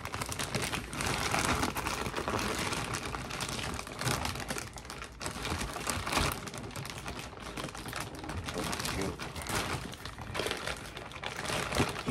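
Grey plastic poly mailer bag crinkling as it is handled and pulled open: a continuous, irregular run of crackles.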